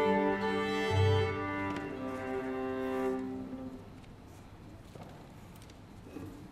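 A string quartet of two violins, viola and cello plays sustained chamber-music chords, with a low cello note about a second in. The notes die away around three to four seconds in, leaving the reverberation of a quiet room.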